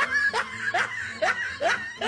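A man laughing in a run of short bursts, each rising in pitch, about two or three a second.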